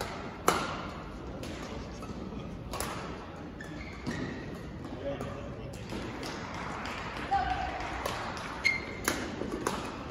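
Badminton rally: rackets striking the shuttlecock in sharp cracks a second or two apart, the hardest hit about half a second in, with short squeaks of shoes on the court.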